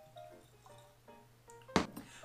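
Glassware set down on a wooden bar top, one sharp knock near the end, over quiet background guitar music.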